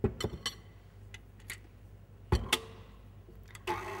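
Clicks and knocks from a KitchenAid Artisan stand mixer and its steel bowl as it is handled, with a louder thump a little past halfway. Near the end the mixer's motor starts up on low speed with a steady hum, working flour into the dough.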